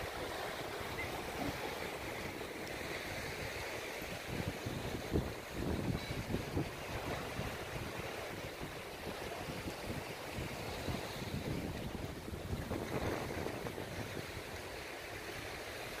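Sea surf washing gently onto a rocky shore, with wind gusting on the microphone, strongest about five to seven seconds in.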